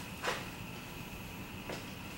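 Quiet indoor room tone: a steady hiss with a thin high hum, broken by a short soft knock about a quarter second in and a fainter one near the end.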